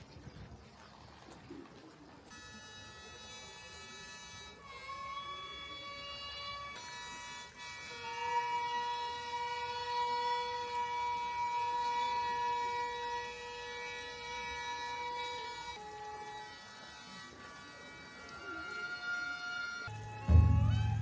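Gagaku, Shinto ceremonial music: wind instruments holding long sustained notes that slide up and down in pitch, starting about two seconds in, strongest through the middle and thinning out after about sixteen seconds.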